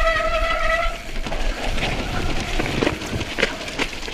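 Mountain bike disc brake squealing with one steady high note for about a second, typical of brakes on a wet trail. After it comes the bike's rattle with a few sharp knocks over roots and ruts, and a steady low wind rumble on the helmet camera's microphone.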